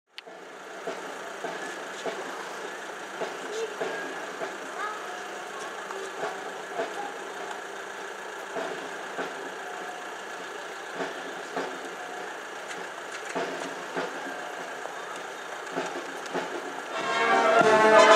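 Street noise with people talking and a vehicle running, with scattered small knocks; about a second before the end a military brass band starts playing loudly, saxophones, clarinets and brass together.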